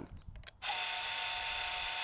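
DeWalt 20V Max dual-switch deep-cut cordless band saw with a brushless motor, running free with no load at its lowest speed-dial setting. It starts about half a second in and runs steadily with a constant whine.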